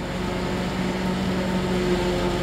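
Self-propelled forage harvester running steadily as it chops standing corn and blows silage into a truck: a steady machine drone with a constant hum.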